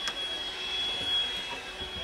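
Steady background noise of a busy exhibition hall, heard inside a caravan on a stand: an even hiss with a faint, steady high whine.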